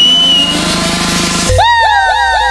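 DJ transition effects in a live electronic dance set: a rising sweep builds for about a second, then a deep bass hit lands and a quick run of falling laser-like synth zaps repeats about five times a second.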